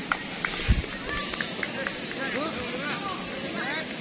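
Crowd of spectators shouting and calling over one another in a steady babble of voices. There is one brief, loud low thump about a second in.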